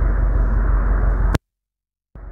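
Steady low outdoor rumble with no speech. About a second and a half in it ends in a sharp click, and dead silence follows where the recording is cut.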